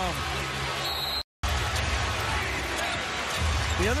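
Basketball arena ambience from a game broadcast: steady crowd noise with a basketball being dribbled on the hardwood court. The sound drops out completely for a moment about a second in.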